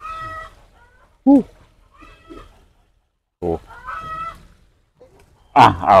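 Chickens clucking in a string of short, high-pitched calls, with a man's brief 'yeah' and 'uh' sounds between them; his 'yeah' about a second in is the loudest sound.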